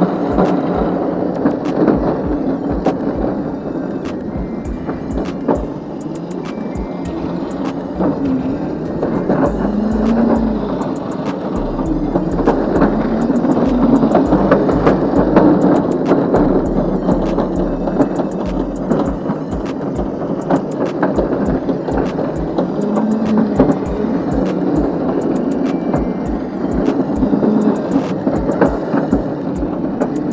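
Razor Crazy Cart XL electric drift kart being driven over cracked asphalt: a steady clattering rattle of the wheels and casters, with the motor's pitch rising and falling as the kart speeds up and slows down. Wind buffets the microphone heavily in the middle stretch.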